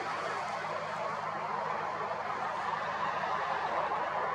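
Steady outdoor background noise: an even hiss with a faint low hum underneath and no distinct events.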